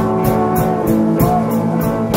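Band playing rock music: sustained electric guitar chords over a drum kit, with cymbal strikes keeping a steady beat about three times a second.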